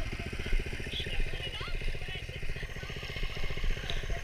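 Small single-cylinder go-kart engine, about 5–6 hp, idling with a steady, even firing pulse.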